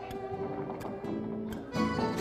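Live malambo music: violin and accordion holding notes over guitar and bombo drum, with a few sharp strikes from the dancers' stamping boots (zapateo).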